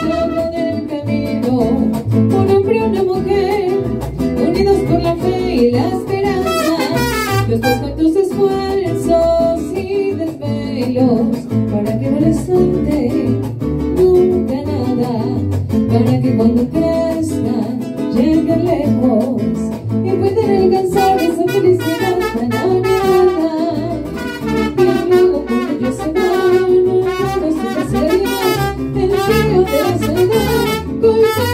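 Mariachi band playing a song, a brass melody over strummed guitars.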